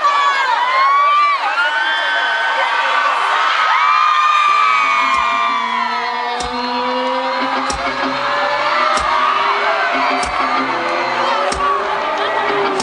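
Concert crowd screaming and cheering. About four and a half seconds in, the band's live intro begins under the screams: held low tones that slowly rise in pitch, with a heavy drum beat about every second and a quarter.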